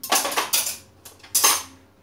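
Metal cutlery clattering as it is put into the compartments of a kitchen drawer's cutlery tray, in two bursts: one about half a second long at the start and a shorter one about a second and a half in.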